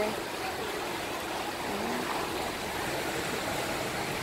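Small sea waves washing onto a sandy beach: a steady rushing surf noise.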